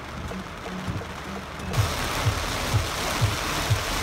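Rain and road noise in a car driving through heavy rain, cutting in suddenly a little before two seconds in, under background music with a steady drum beat of about two kicks a second.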